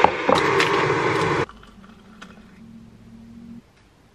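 A kitchen appliance running loudly for about a second and a half and cutting off suddenly, followed by a faint low hum.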